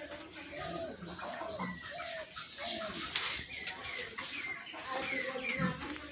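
Birds calling: a run of short chirping calls, many of them falling in pitch, with two sharp clicks about three and four seconds in.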